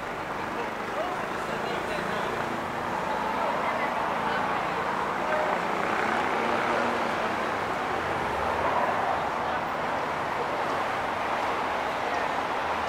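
Busy city street ambience: steady traffic noise with voices of passers-by mixed in, swelling a little over the first few seconds.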